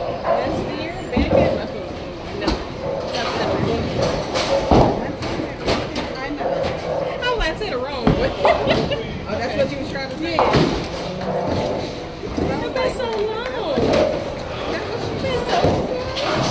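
Bowling alley din: bowling balls thudding onto the lanes and pins crashing, a handful of sharp impacts over steady background chatter of many voices in a large echoing hall.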